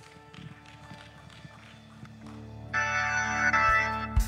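Organ holding a chord quietly, then the worship music swells much louder and fuller about two-thirds of the way in.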